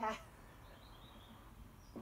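Quiet cabin room tone, with a few faint, high chirps like distant birdsong.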